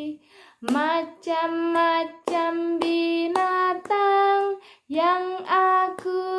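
A high female voice singing a simple children's song of held notes in a stepwise melody. The song is in short phrases with brief pauses between them.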